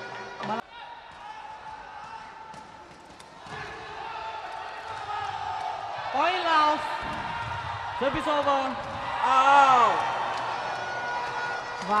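A short broadcast sting that cuts off about half a second in, then sepak takraw arena sound: crowd noise building, sharp kicks of the ball, and loud shouts from players and crowd around six, eight and nine and a half seconds in as a point is won.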